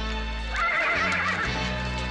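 A horse whinnies once, about half a second in, for roughly a second, over steady orchestral background music.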